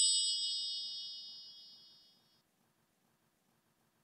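A bright ding sound effect with the logo: several high tones ringing together and fading away over about two seconds.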